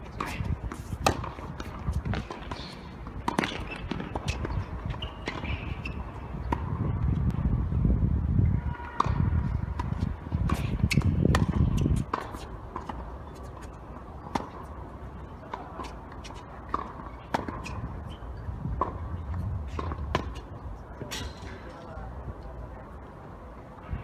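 Tennis ball being served and rallied: sharp pops of strings striking the ball and ball bounces on the hard court, at irregular intervals of about a second. A low rumble swells between about a third and half of the way through.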